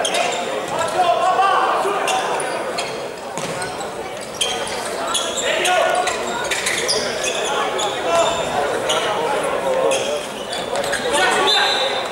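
Futsal game sounds on a wooden indoor court: repeated ball kicks and bounces and short high shoe squeaks, over indistinct shouts from players and the crowd, carrying in the large hall.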